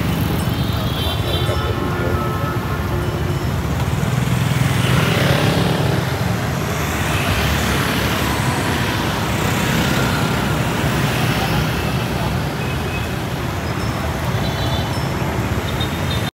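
City street traffic with motor scooters passing close by, one louder pass about five seconds in, over the chatter of a crowd.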